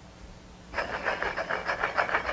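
Two blocks being rubbed together in quick, even strokes, about nine a second, starting suddenly about a second in. It is heard as film audio over a hall's loudspeakers.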